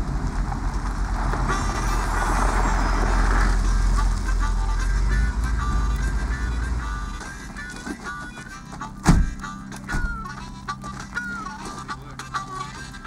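A vehicle engine's low rumble fades away about seven seconds in, while a harmonica plays a slow melody of held, stepping notes. A single sharp thump stands out about nine seconds in.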